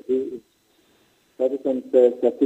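A man talking, breaking off about half a second in and starting again after a pause of about a second.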